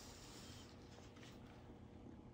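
Near silence: room tone, with faint light handling sounds.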